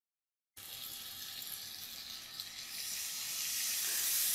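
Chicken and vegetable shashlik skewers sizzling in hot oil in a frying pan: a steady hiss that starts about half a second in, after a moment of dead silence, and grows louder as more skewers go into the oil.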